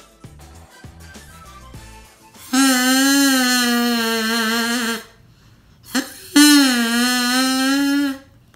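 Soft background music, then a drinking-straw oboe blown in two long, buzzy, slightly wavering notes at a steady low pitch, like an elephant call: the first starting about two and a half seconds in and lasting some two and a half seconds, the second shorter near the end.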